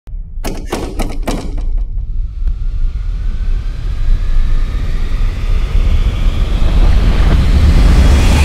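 Dramatic background score: four sharp hits in quick succession in the first second and a half, then a deep rumbling drone that swells steadily louder, with faint tones rising in pitch.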